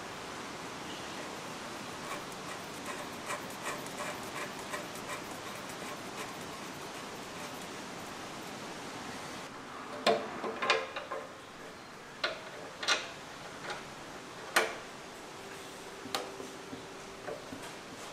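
Light metallic ticking and clicking as a fitting and small parts are handled and screwed onto an aluminium oil tank, soft quick ticks in the first half, then sharper separate clinks and knocks from about ten seconds in.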